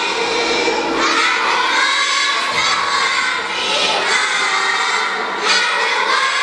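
A children's choir of young girls singing loudly together into microphones, so many voices at full force that it comes close to shouting.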